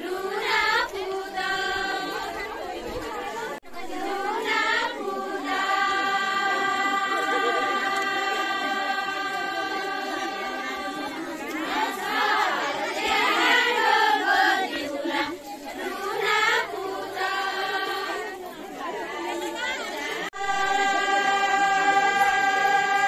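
A group of women singing together in unison, holding long drawn-out notes, in a folk song of the Putla dance of Doti. The singing breaks off abruptly a few seconds in and again near the end.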